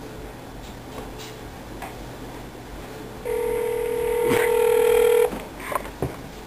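A cell phone's ringback tone, heard loud through the handset's speaker: one steady ring about two seconds long, starting a little over three seconds in. A few faint clicks come before it.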